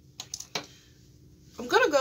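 A few quick, sharp clicks and taps from makeup items being handled, as an eyeshadow palette is picked up. A woman's voice starts near the end.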